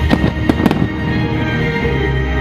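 Fireworks shells bursting, a quick run of sharp bangs in the first second, over the show's music soundtrack.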